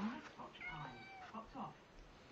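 Siamese cat meowing: a wavering call lasting about half a second, starting about half a second in, then a shorter call near the end.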